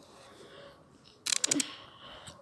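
A short, loud rattle of rapid clicks about a second and a quarter in, lasting about half a second, over a quiet background.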